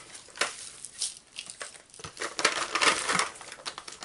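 Rummaging through a stash of craft supplies for sequins: packaging crinkling and rustling, with small clicks and taps, busiest from about two to three and a half seconds in.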